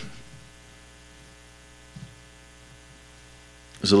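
A steady electrical hum in the recording, made of many evenly spaced steady tones, fills a pause between a man's words. There is a faint short blip about two seconds in, and speech resumes near the end.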